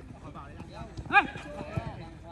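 Footballers shouting and calling to each other during play, with one loud call about a second in, and a few dull thuds of feet or the ball on the turf.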